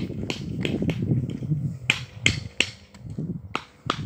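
A handful of sharp, separate taps of a hand tool on brick and concrete during walkway edging work, coming in the second half.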